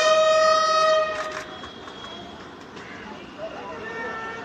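Brass bugle call ending on one long held note that stops a little over a second in, followed by faint murmuring voices.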